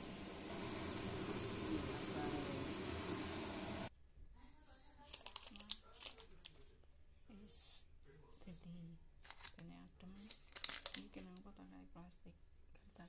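A steady hiss for about four seconds, cutting off suddenly. Then a plastic sheet lining the tray crinkles in short bursts as it is handled, with faint voices in the background.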